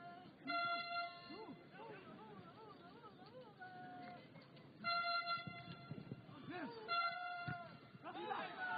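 Football match field sound: players' voices calling out on the pitch, with three short steady pitched tones, one just after the start, one about five seconds in and one about seven seconds in.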